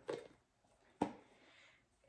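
A quiet pause with one sharp click about a second in, followed by faint low hiss.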